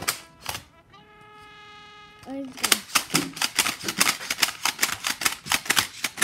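Rapid plastic clicking from a toy Nerf crossbow-style blaster being worked by hand, about five clicks a second over the second half, after a steady held tone a second or so in.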